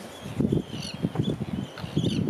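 Seabird colony calling: repeated high, sliding calls typical of terns, over a low, irregular rumbling that grows loud about half a second in.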